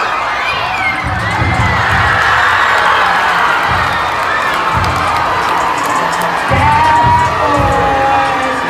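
Rodeo arena crowd cheering and shouting, with whoops rising and falling over the din, as a team race ends in a win.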